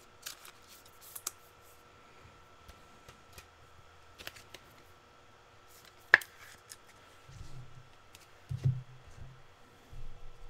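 Packs of trading cards being handled and opened: quiet, scattered crinkles and clicks of wrapper and cards, with one sharp click about six seconds in and a few dull bumps after it.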